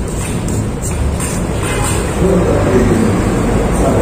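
A steady low rumble of background noise, with faint voices about two seconds in.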